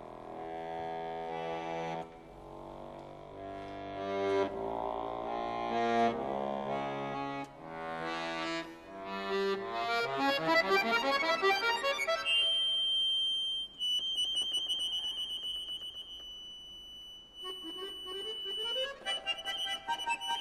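Scandalli concert accordion playing on its own: chords and fast note runs, then a long high held note that wavers in pulses, quieter, before rising runs come in near the end.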